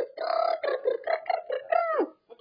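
A young child making wordless, silly vocal noises in a quick run of short syllables, ending with a downward slide in pitch.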